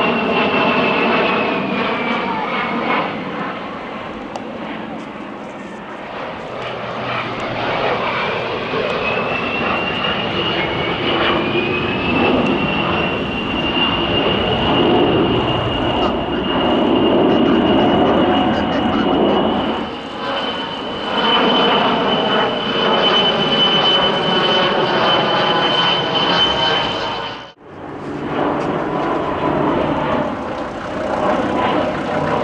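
Beriev Be-200 amphibian's twin D-436TP turbofans running through a display pass: a loud, dense jet sound with a high whine that falls at first, then rises and holds steady. Near the end it cuts off abruptly, and the jet engines of a climbing MC-21 airliner follow.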